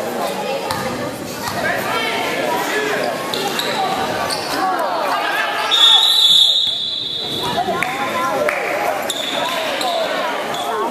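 Voices of the crowd talking in a gym, with a basketball bouncing on the hardwood court. About six seconds in there is a high, steady tone lasting about a second, the loudest sound.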